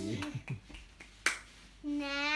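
A child's voice trailing off, a few small clicks, then one sharp click a little past a second in, the loudest sound here; near the end a child's voice starts up again.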